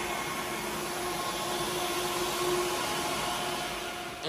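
Cooling fans of running HPE ProLiant DL580 Gen9 rack servers: a steady whir with a faint hum in it.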